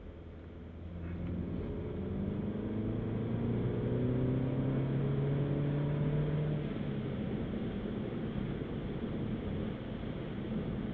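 Mini Cooper S 2.0-litre turbo four-cylinder engine accelerating from about a second in, its pitch climbing steadily until about six and a half seconds in. It then eases off to a steady cruise with road noise, heard from inside the cabin.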